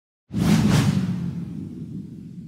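Logo-intro whoosh sound effect that comes in suddenly about a third of a second in, with a low rumbling hum underneath that slowly fades.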